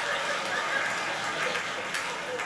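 Studio audience laughing, a steady mass of laughter that eases off toward the end.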